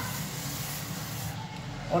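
Salt being sprinkled by hand onto rolled-out paratha dough: a soft hiss that fades about a second and a half in, over a steady low background hum.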